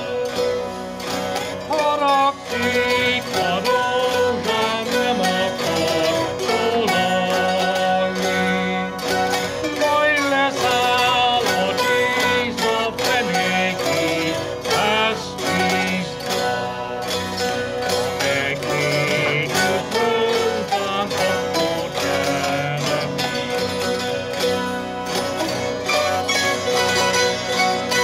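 Hungarian folk tune played on citeras (Hungarian zithers), strummed in a fast, even rhythm under a wavering melody line.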